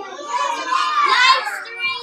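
Young children's voices: high-pitched chatter and calls from a small group working together.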